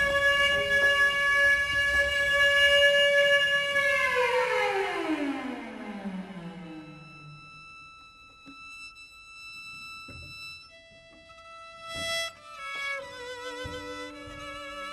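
Bowed strings, violin and cello: a loud long held note slides steadily down in pitch over about two seconds and fades away. Quiet sustained notes follow, and near the end several notes come in played with vibrato.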